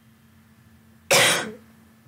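A single short cough about a second in, sudden and loud, fading within half a second.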